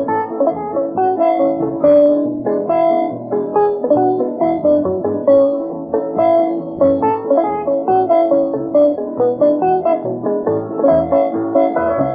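Fast instrumental country tune played by a small band, with piano and guitar carrying a quick run of notes. It is heard from an old 33⅓ rpm transcription disc, so the top end is dull.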